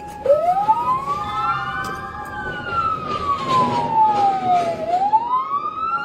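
Police car siren switched on in a slow wail. Its pitch climbs for about two seconds, falls for nearly three, then starts climbing again.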